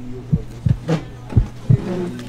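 Low, heartbeat-like thumps in pairs, about one pair a second, over a steady low hum: an edited-in suspense beat laid under the tasting.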